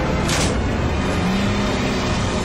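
Cartoon spaceship engine rumble, loud and steady, with a brief whoosh about a third of a second in, under dramatic background music.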